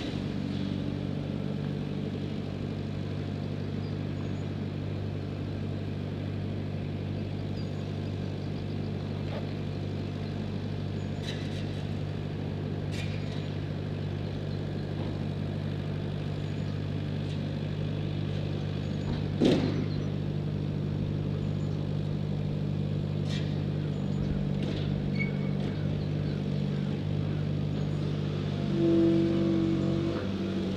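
A steady low mechanical hum of several layered pitches, like a machine or engine running without change, with a few faint clicks and one sharp knock about twenty seconds in.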